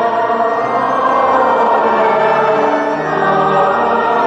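Liturgical singing at Mass: voices holding long notes over organ accompaniment, sung while the host and chalice are raised at the altar.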